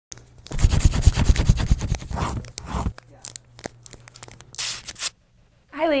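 Paper crumpling and rustling: a dense crackle with low thuds for about the first three seconds, then a few scattered crackles and two short rustles, stopping suddenly just before a woman speaks.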